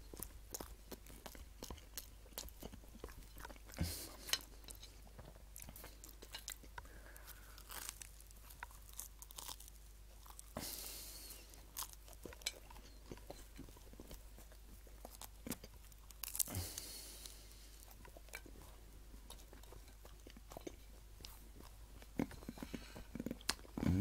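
Quiet close chewing and crunching of toasted sandwich bread, with many small clicks as it is bitten and chewed. Two short breathy rushes come a little before the middle and about two-thirds through.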